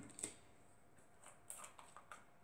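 Near silence with a few faint clicks and taps as small plastic cosmetic bottles are handled.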